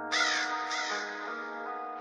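Two crow caws, the second about two-thirds of a second after the first, over a sustained synth chord in a trap beat's intro.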